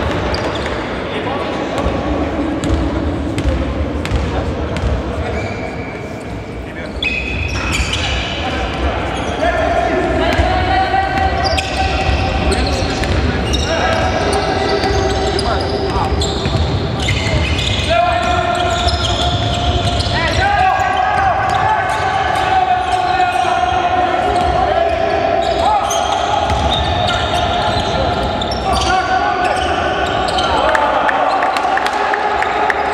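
Basketball game sounds in a large echoing sports hall: the ball bouncing on the hardwood court during live play, with wordless voices calling out. From about seven seconds in, pitched calls and squeaks keep coming.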